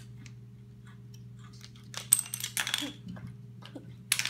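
Small hard objects clicking and clattering against a tabletop, a short burst of clicks about two seconds in, over a low steady hum.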